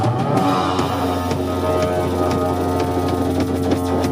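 One-string electric guitar holding a single steady low droning note through its amplifier, with only scattered drum and cymbal hits under it.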